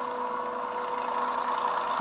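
Soundtrack of the TV episode: a steady low held tone under a rushing noise that slowly swells toward the end.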